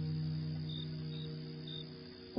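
Crickets chirping, short high chirps about twice a second, over a single held low note of slow music that gradually fades away.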